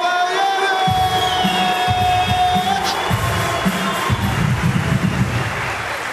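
A ring announcer draws out a fighter's name in one long held note over arena music with a heavy, uneven bass. The note breaks off a little under three seconds in, and crowd cheering swells over the music.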